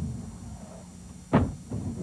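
Modified Corvette race car's engine running faintly, heard from the in-car camera, then a single sudden loud bang about a second and a half in.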